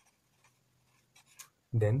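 A black marker pen writing on paper: a few short, faint strokes.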